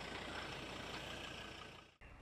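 A vehicle engine idling steadily, fading out near the end.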